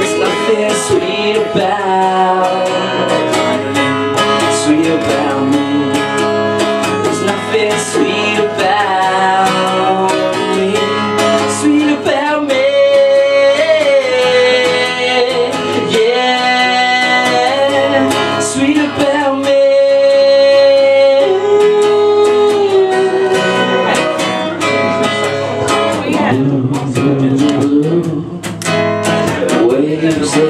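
A live song on a single acoustic guitar with a solo singing voice. The guitar plays throughout, and the voice holds two long notes about halfway through.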